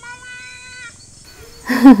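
A person's voice holding a quiet, steady note for under a second, then a loud burst of laughter near the end.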